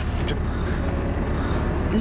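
Steady low rumble of a car's engine and body, heard from inside the cabin.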